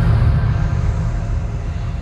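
A deep boom from an intro sound effect, its low rumble slowly fading, under dark intro music.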